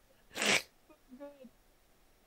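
A person's sharp, breathy burst of breath, about half a second in, then a faint short voiced sound a moment later.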